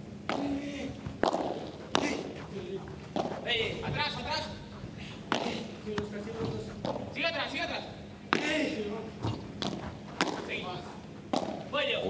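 Padel rally: the ball is struck back and forth with padel rackets, giving a sharp hit about once a second, with voices heard between the shots.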